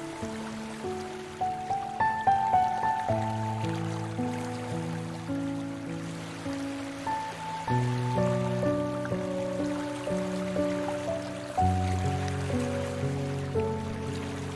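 Slow, calm relaxation piano music: single melody notes over held low chords that change about every four seconds.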